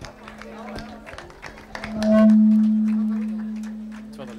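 A steady low hum, and about two seconds in a loud ringing tone that starts suddenly and fades away slowly, over faint crowd murmur.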